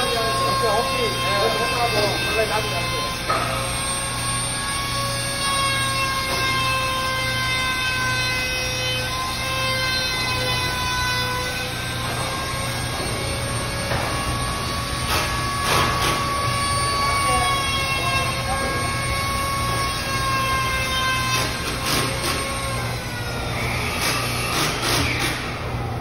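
Workshop machinery: a steady, high-pitched machine whine that wavers slightly in pitch over a constant low hum, with short hissing bursts around the middle and near the end.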